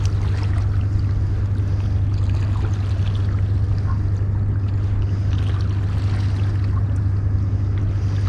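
Sea water lapping and washing against the rocks of a breakwater, over a steady low hum.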